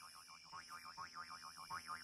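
A springy, boing-like wobbling tone that swoops up and down about six times a second and grows louder, over a faint steady high whine.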